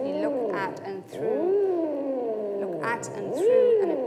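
Theremin played by a hand moving close to a pregnant belly that serves as its antenna: a wavering, voice-like tone that glides up and down in pitch, swooping several times.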